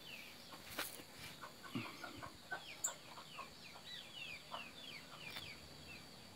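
Faint background bird calls, many short falling chirps several times a second, with a few soft clicks among them.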